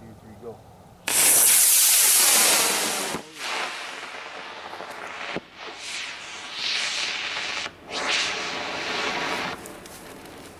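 Cluster of black-powder model rocket motors (D12-0s lighting C6-0s) igniting about a second in with a sudden loud rushing hiss that holds for about two seconds and then fades. Further bursts of motor hiss follow, broken by short gaps and a sharp pop a little past five seconds, as the upper motor clusters light in turn.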